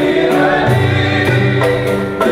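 A man singing into a microphone in long held notes, with other voices and instrumental accompaniment underneath, in a live performance of Algerian traditional music.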